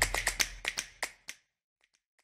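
Clicking sound effect at the tail of an animated intro sting: a run of sharp clicks that grow fainter and further apart over the first second and a half, then silence.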